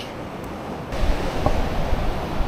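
Surf and wind noise on the microphone, with a low rumble that grows stronger about a second in.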